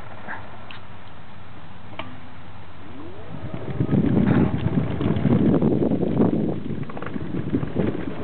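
Wooden boardwalk planks clattering and knocking underfoot or under wheels as they are crossed, a dense irregular rumble of knocks. It sets in about three and a half seconds in, after a quieter stretch of low steady background.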